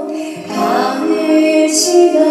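A woman singing a slow Korean song in long held notes over instrumental accompaniment, with a brief hissing consonant near the end.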